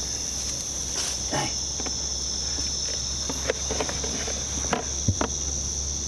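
Steady, high-pitched chorus of night insects, with scattered light knocks and rustles as a boa constrictor is lifted out of a plastic tub.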